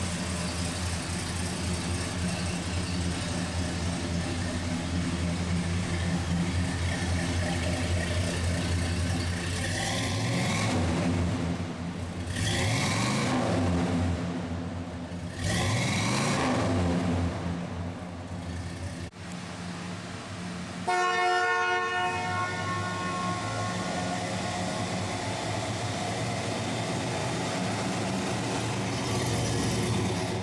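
Oldsmobile 350 Rocket V8 idling steadily, revved up and back down three times starting about ten seconds in. A few seconds later the car horn sounds once for about three seconds, with the engine still idling under it.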